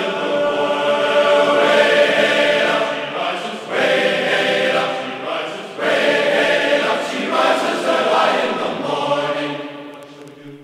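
Background music of a group of voices singing together, dying away near the end.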